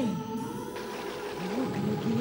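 Drawn-out, eerie moaning voice that slides up and down in pitch, over a steady droning horror-music score.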